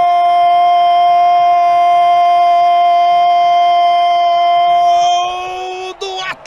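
A male football commentator's long, held goal cry, 'Gooool', sustained at one steady pitch and breaking off shortly before the end.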